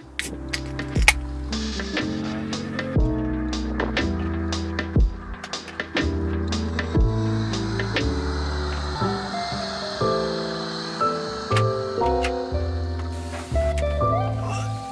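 Background music with a steady beat, its bass notes changing about once a second.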